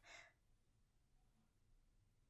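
Near silence: room tone, opening with a brief soft breath from the speaker.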